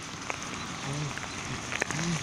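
Steady rain falling, with scattered louder drops ticking now and then.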